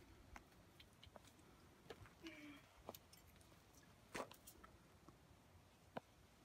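Near silence: a faint outdoor background with a few scattered soft clicks, the clearest about four seconds in.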